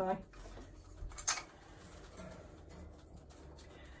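Quiet handling of a hanging wooden chew toy on a metal chain: a couple of soft knocks about a second in, then faint room tone.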